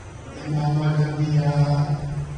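A man's voice reciting in a chant, holding one long, level note that starts about half a second in.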